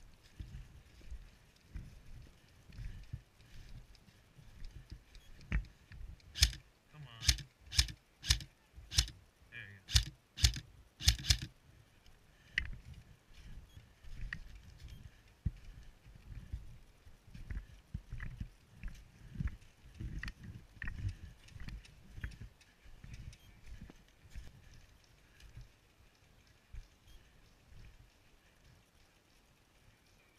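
Footsteps crunching through deep snow at a steady walking pace, about two steps a second. About six seconds in, a quick string of about ten sharp, loud snaps rings out over the steps and stops about five seconds later.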